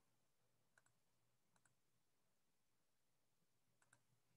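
Near silence, with a few very faint paired clicks spread through it.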